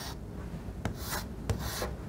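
Chalk writing on a blackboard: a few short scratching strokes with brief gaps between them as a symbol is written.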